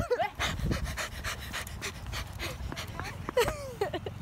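Breathless, wheezy laughter in quick breathy gasps, about four or five a second, with wind rumbling on the phone's microphone and a short squealing laugh near the end.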